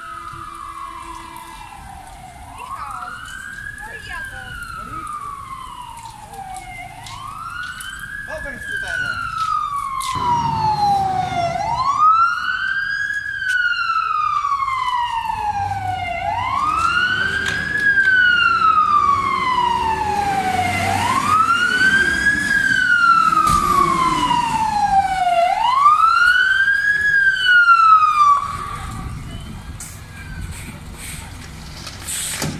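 Fire engine siren in a slow wail, each cycle a quick rise and a long fall, about every four and a half seconds. It grows louder as the truck approaches, then cuts off near the end.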